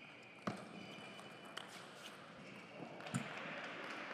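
Celluloid-type table tennis ball struck by rackets and bouncing on the table in a short rally: a few sharp clicks, the loudest about half a second in as the serve is hit, more near the middle and one about three seconds in.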